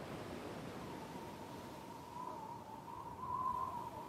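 Faint hiss with a single thin, high note held and wavering slightly from about half a second in, growing a little louder near the end: a sustained note from the opening of a film trailer's soundtrack.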